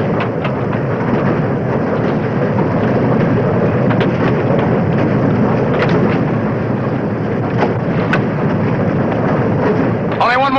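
A loud, steady, low noise with a few faint clicks through it.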